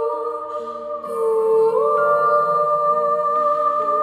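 Women's voices singing a slow hymn-like melody in long held notes, gliding up to a higher note about two seconds in, over soft backing music.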